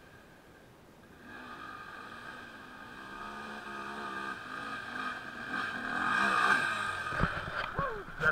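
Dirt bike engine revving up and down under load as it climbs a steep hill, growing louder as it comes closer, with a few sharp knocks near the end.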